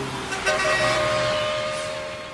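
Busy city street traffic, a dense rumble of vehicles with several car horns honking over it; one horn note is held for over a second, and the whole sound fades a little near the end.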